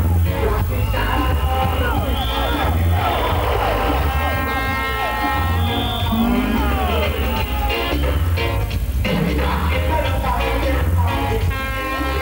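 Reggae played loud through a sound system: a deep bass line pulses steadily under a voice.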